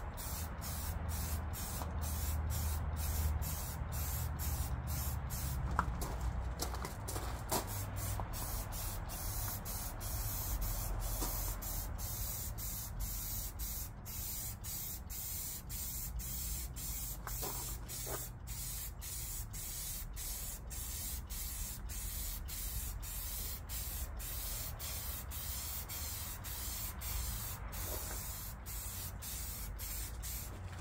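Aerosol spray can of Rust-Oleum gloss protective enamel spraying paint onto a riding-mower hood, a continuous steady hiss.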